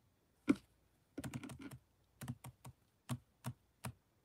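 Fingers in plastic gloves clicking and tapping on a plastic bottle of Gain dish soap. One loud click about half a second in, a quick flurry of taps, then single taps at uneven spacing.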